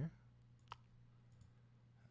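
A single computer mouse click about three quarters of a second in, over near silence with a faint steady low hum.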